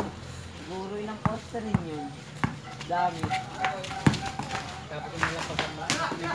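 A basketball knocking on a concrete court several times at irregular intervals, over players' voices calling out during play.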